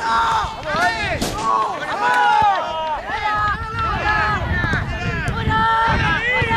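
Several voices shouting and calling at once, overlapping high-pitched yells that continue without a break, over a low rumble.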